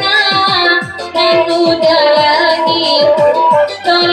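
Saluang dangdut music: a woman sings through a microphone over a keyboard backing, with a steady dangdut drum beat whose strokes drop in pitch about three to four times a second.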